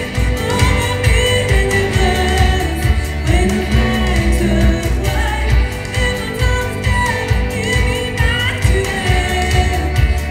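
Indie rock band playing live: singing over electric guitar with a steady low beat underneath.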